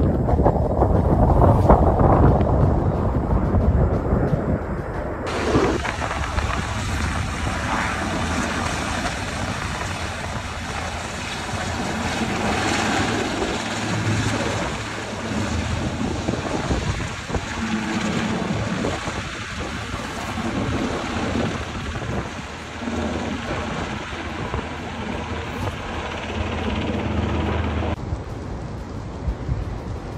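Wind rumbling on a phone microphone, heaviest in the first five seconds, then a run of other outdoor field recordings that are mostly a steady noisy rumble, with a change in the sound about five seconds in and again near the end.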